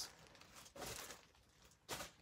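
Faint rustle of plastic bags holding yarn skeins being moved, about a second in and again briefly just before the end, over near silence.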